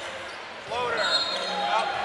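Live basketball game sound in a gym: voices over court noise, with a thin steady high tone from about one second in until nearly two.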